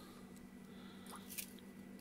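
Faint scratching of a jumper wire being pushed into a solderless breadboard, with one small click about one and a half seconds in, over a steady low electrical hum.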